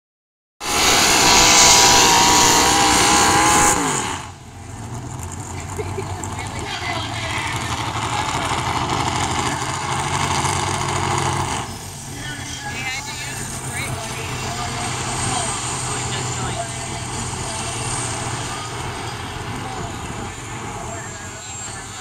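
Single-engine modified pulling tractor running very loud at full throttle, then shutting down about four seconds in, its pitch falling as the revs drop. After that comes a lower steady engine drone mixed with crowd noise and a voice.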